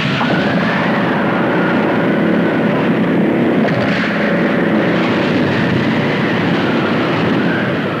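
Storm at sea from a film soundtrack, wind and heavy waves: a loud, steady rushing noise with a faint high tone that slowly wavers up and down.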